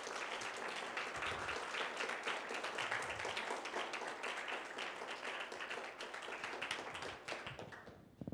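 Audience applauding: many hands clapping together in a dense, steady clatter that thins out and dies away near the end.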